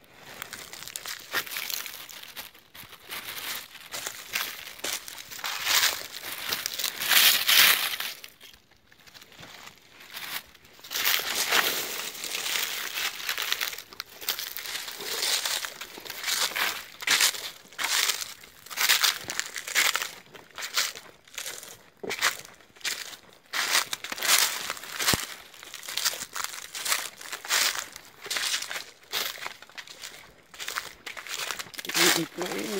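Dry fallen leaves crunching and rustling underfoot. The rustling is irregular at first, then settles into a steady walking rhythm of roughly one crunching step a second.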